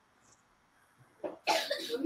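Near silence, then a man coughs sharply near the end.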